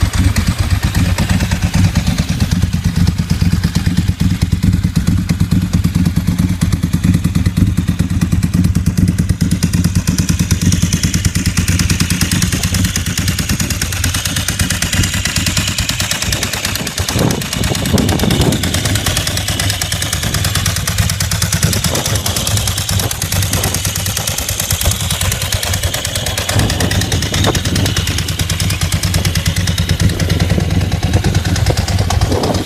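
Ducati 748 SPS's 90-degree V-twin engine idling steadily with the bike standing still.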